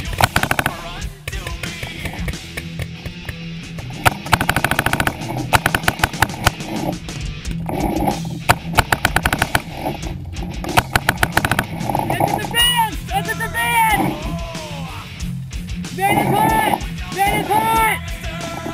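Several bursts of rapid paintball marker fire, each a quick string of shots lasting about a second, under loud rock music.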